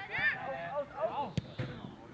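Voices calling out on and around a football pitch, with a single sharp thud of a football being kicked about one and a half seconds in.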